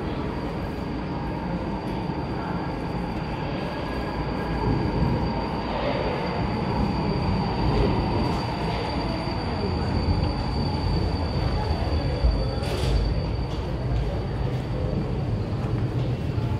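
Incheon Line 2 light-metro train pulling into the station and braking to a stop, heard through the platform screen doors. There is a steady rumble of the cars on the track with a thin, steady high whine above it, and a few brief knocks.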